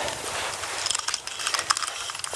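Fishing reel clicking in rapid, uneven runs of sharp ratchet-like ticks as line is reeled in through the ice hole.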